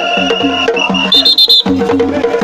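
Fast, evenly repeating drumming with a shrill whistle held for about a second. A higher, louder whistle blast follows in the second half.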